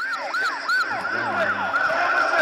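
Several electronic sirens yelping over one another, each sweeping quickly down and up in pitch about four times a second, over a rumbling background of street chaos.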